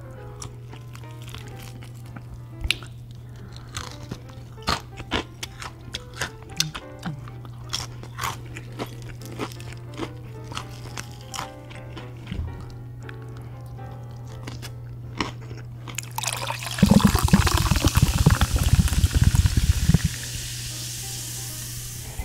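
Crispy fried chicken being bitten and chewed close to the microphone, with many short sharp crunches. About three-quarters of the way through, a drink is poured from a can into a glass: a loud splashing rush that stops after a few seconds, leaving a hiss of fizz.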